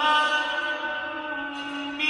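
Male imam's melodic Quran recitation: one long note held at a steady pitch, sagging slightly in loudness near the end.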